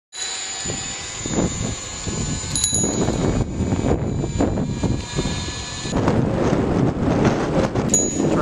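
A handlebar bicycle bell rung, its high ring lingering, struck again about two and a half seconds in and once more near the end. Under it runs a continuous rumble of wind and road noise from riding.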